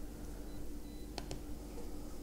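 Two quick computer mouse clicks a little over a second in, over a steady low hum of room tone.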